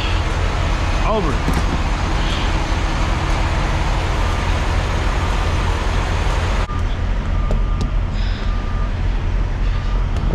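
Semi-truck diesel engines idling with a steady low hum, under a broad rushing noise that cuts off abruptly about two-thirds of the way through. Faint short beeps sound a few times after the cut-off.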